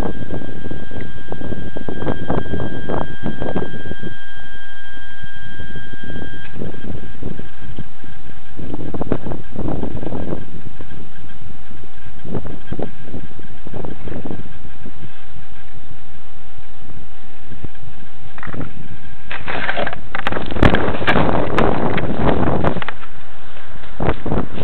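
Wind buffeting the small onboard camera's microphone of a radio-control plane, in uneven gusts, with a faint steady high whine until about three-quarters of the way through. About 19 seconds in, a louder rush of noise runs for a few seconds.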